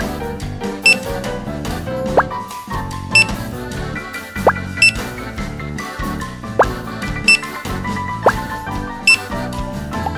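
Background music with a checkout-scanner beep sounding five times, once for each toy grocery item rung up, and four short rising swoops between the beeps.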